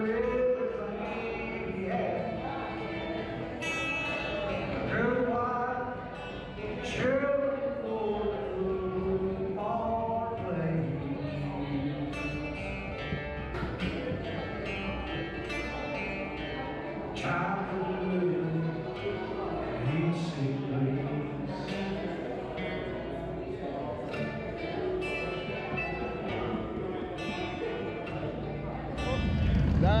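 Live acoustic guitar and a singer's voice performing a song on a small stage in a large hall.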